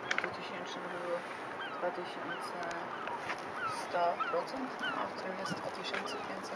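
Birds chirping and calling, many short calls scattered throughout over steady background noise, with a brief sharp knock right at the start.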